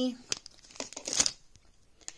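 Clear plastic cosmetic packaging crinkling as it is handled, in a few short rustles, the loudest about a second in.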